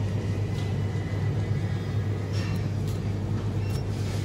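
A steady low hum, with faint brief crinkles from a plastic tofu tray being handled a little after the middle and near the end.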